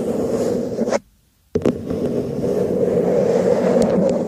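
Fingernails scratching steadily over the bowl of an upturned pink stemmed cup, close to the microphone. The scratching stops for about half a second, about a second in, then starts again.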